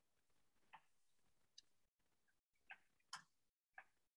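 Near silence broken by about five faint, irregularly spaced clicks of a computer mouse.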